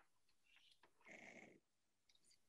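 Near silence: room tone, with one faint, brief sound about a second in.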